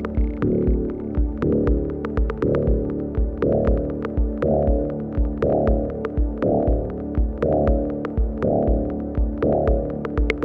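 Electronic groovebox music played on a Synthstrom Deluge: a low droning synth bass that swells about once a second over steady low kick thuds and fast ticking hi-hat clicks.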